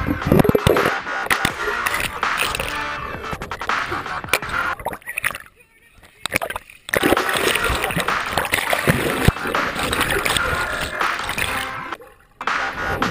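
Water splashing and indistinct voices mixed with music, all dropping away briefly about halfway through.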